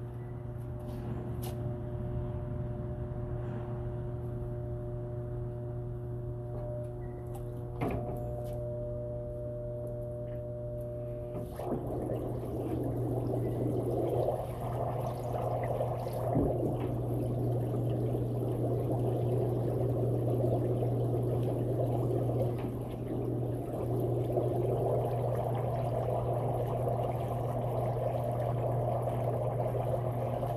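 Steady low hum of an electric air pump, joined about a third of the way in by water bubbling and churning as air from the pump escapes the drilled holes of a homemade PVC pipe diffuser in a metal stock tank. The bubbling then keeps on evenly over the hum.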